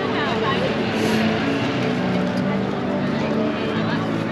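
Busy city street ambience: road traffic passing, including a motor scooter, with the voices of passers-by.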